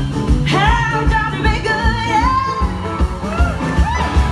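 Live rock-and-roll band with electric guitars, bass and drums playing at full volume. A woman sings a long, high, wordless wail over it, starting about half a second in, and a shorter sliding note comes near the end.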